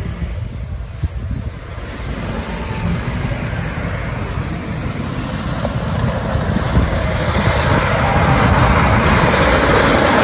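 Great Coasters International wooden roller coaster train rumbling along its wooden track, growing steadily louder as it approaches.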